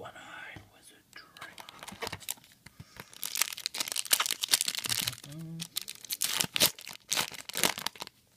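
Foil Yu-Gi-Oh booster pack wrapper being torn open and crinkled, in a rapid run of sharp rips and rustles that are loudest in the middle and latter part.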